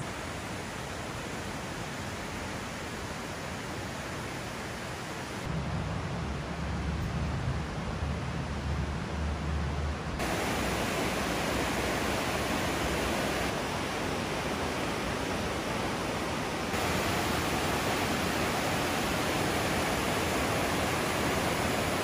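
Steady rushing of a fast mountain river running over rapids. The sound steps up in level a few times, with a low rumble for a few seconds near the middle.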